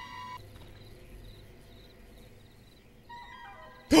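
Quiet, tense film score: a held high note that stops about half a second in, then a very quiet stretch, with a faint pitched sound coming in near the end.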